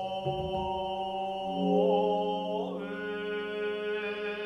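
Jōdo Shinshū Buddhist sutra chanting in long held notes, laid over ambient background music with sustained tones; the pitches shift to new notes about two-thirds of the way through.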